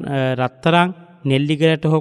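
A Buddhist monk's voice chanting, syllables drawn out and held on a steady pitch, with a short break about half a second in.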